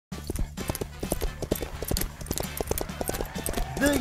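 Hooves clip-clopping at a walk as a sound effect: many quick, irregular knocks over a steady low hum. A man's voice starts saying "The" at the very end.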